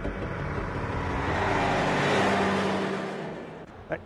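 A road vehicle passing by, its tyre and engine noise swelling to a peak about halfway through and then fading away.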